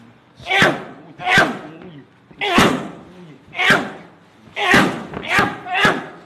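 Gloved strikes landing on leather Thai pads: seven loud slaps, about one a second at first, then three in quick succession near the end, each with a short shout from the fighters.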